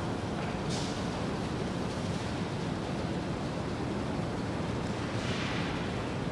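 Steady background noise of a large, quiet room before any playing, with a faint brief hiss about a second in and again near the end.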